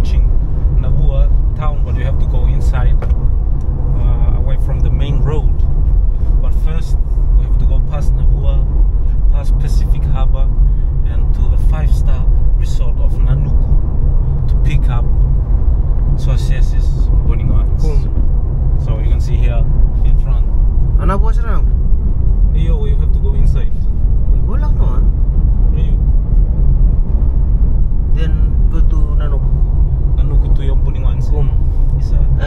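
Steady low rumble of a Subaru car's engine and tyres, heard from inside the cabin while driving, with people talking over it.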